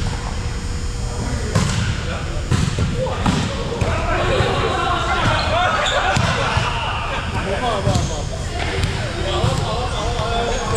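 A volleyball being struck and bouncing on a hardwood gym floor: separate sharp thumps in the first few seconds and again near the end. In the middle several players' voices call out over one another.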